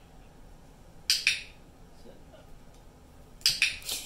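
Short, sharp clicks: a pair about a second in and three more just before the end.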